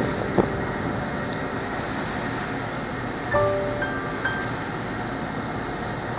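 Steady drone and rush of a ferry under way, heard from on deck: engine noise mixed with wind and water. A knock comes just after the start, and a few short high tones sound about halfway through.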